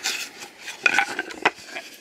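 Small glass essential-oil bottles clinking against each other as they are rummaged out of a shipping box, with rustling of the packing. There are a few sharp clinks, the loudest about a second in.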